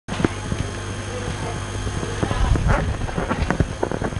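Classroom room noise: a steady low hum under scattered light knocks and shuffling, which grow busier about halfway through.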